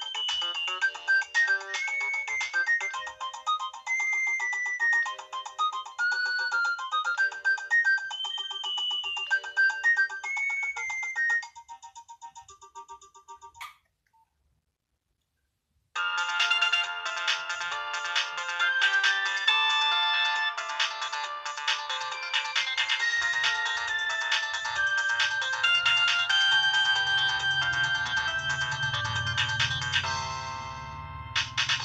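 Nokia 6030 polyphonic ringtones playing. One melody of quick single notes fades out about twelve seconds in. After two seconds of near silence, a second, fuller ringtone starts and plays on.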